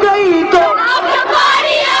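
A female vocalist at a live concert with the crowd singing and shouting along, many voices overlapping at once.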